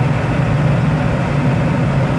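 Steady, deep rush of air streaming past a glider's canopy and in through its open side window.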